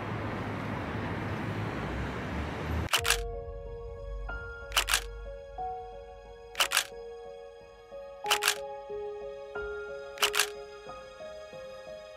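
Camera shutter clicks, five of them about two seconds apart, each a quick double click, over soft background music with long held notes that begins about three seconds in. Before the music comes in, a steady rushing ambient noise.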